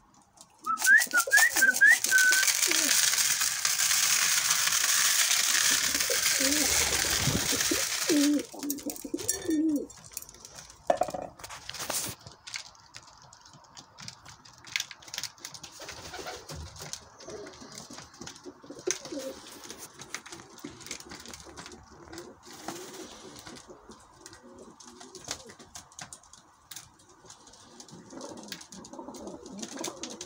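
A loud, even rush of noise for the first eight seconds or so, then pigeons cooing softly while pecking seed from a plastic trough feeder, with many small quick clicks of beaks on grain and plastic.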